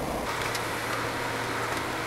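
Steady low background hum with an even hiss.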